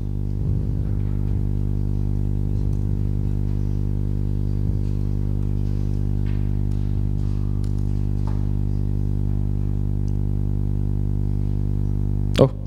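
Steady electrical hum with a stack of many even overtones, unchanging throughout, with a few faint clicks.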